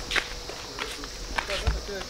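Footsteps on a paved path, a few steps about half a second apart, with faint voices in the background.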